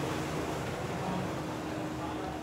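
Steady indoor hum of air conditioning or ventilation, with a faint steady tone running through it.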